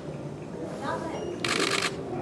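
Press camera shutters firing in a rapid burst of clicks for about half a second near the end, over a faint murmur of voices.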